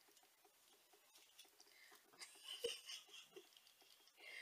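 Near silence with faint rustling and scratching of a synthetic wig being handled and adjusted on the head, a little louder just past halfway.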